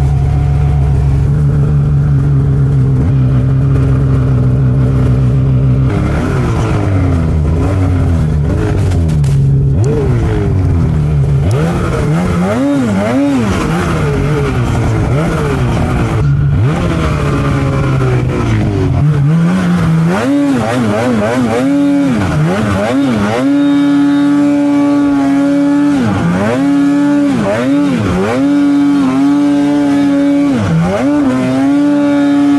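A 2024 Polaris 9R snowmobile's two-stroke engine, heard from the rider's seat while riding in deep powder. It holds a steady pitch for about six seconds, then revs up and drops back again and again as the throttle is worked, with quick rises and falls near the end.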